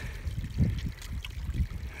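Shallow mountain stream trickling among rocks, under a low, uneven rumble.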